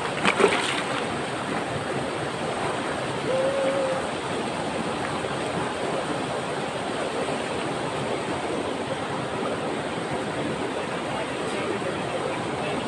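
Steady rushing of a small waterfall pouring down a rock slide into a river pool, with a couple of splashes in the first second.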